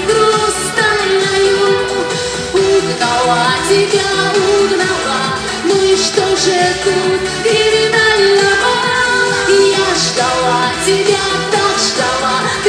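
A woman singing a Russian estrada pop hit into a microphone over an amplified backing track with a steady beat.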